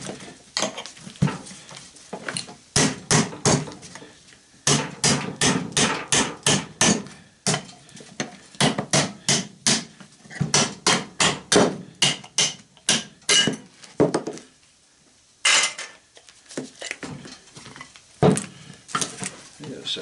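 Hammer blows on the metal housing of a small window air-conditioner fan motor, in runs of quick strikes at about three a second with short breaks about a third and two thirds of the way through, knocking the motor casing apart to free the copper-wound stator.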